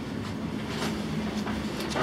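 A steady low hum and rumble with a faint steady tone, room tone in a hotel room, with a few faint clicks.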